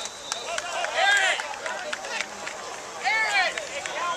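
Voices shouting on a football sideline: two loud, drawn-out yells, about a second in and again about three seconds in, over softer chatter from the players and crowd.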